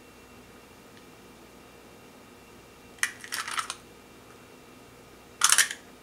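Quiet room tone, then two short bursts of light plastic clicking and rattling from a handheld plastic egg cracker and separator being handled over a ceramic bowl: one about three seconds in, and a louder one near the end.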